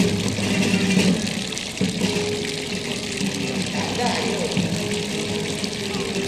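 Fountain water splashing steadily into its stone basin, with music and voices going on behind it.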